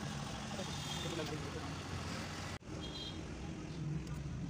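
Steady low hum and rumble of outdoor background noise, with faint voices in it. It drops out for an instant a little past halfway.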